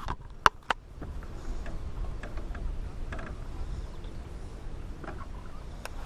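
A few sharp knocks on a small boat, then a low steady rumble with faint ticks as the boat is backed up.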